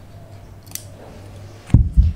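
Scissors snipping the sewing thread of a freshly hand-stitched dart, one crisp snip about three quarters of a second in. Near the end come two dull thumps, the loudest sounds.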